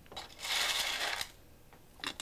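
Small pieces of broken clear glass pouring into a ceramic bisque mold: a clattering trickle of many tiny clinks lasting about a second, then tapering off.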